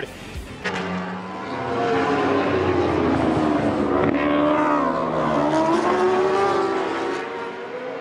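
A pack of racing motorcycle engines at high revs, several pitches sounding together. Their pitch drops, climbs again about halfway through, then falls once more near the end.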